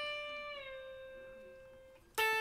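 Electric guitar holding a single note bent up from C to D; about half a second in the pitch sags a little as the bend eases, and the note rings on, fading steadily.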